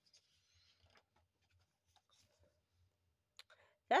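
A page of a glossy picture book being turned by hand: a faint paper rustle in the first second, then a few light clicks and taps.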